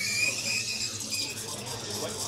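Background room ambience: a steady low hum, with a faint high-pitched whine that comes and goes during the first second or so.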